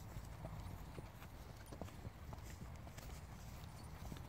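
Horses walking on dry grass and dirt, their hoofbeats faint, soft and uneven.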